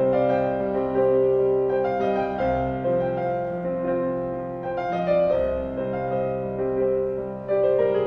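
Solo grand piano playing a slow contemporary classical piece: held chords whose notes ring on, changing every second or two.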